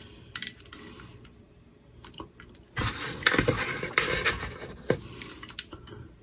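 Fingers handling a small LED light-stick assembly and its thin wires on a work table: scattered light clicks and rustles, becoming busier about halfway through.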